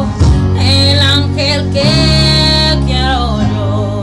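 A song playing: a singing voice holding long notes that bend in pitch, over a guitar-led backing.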